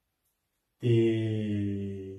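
A man's voice holding one long, low drawn-out vowel, a hesitation filler, starting about a second in and sinking slightly in pitch.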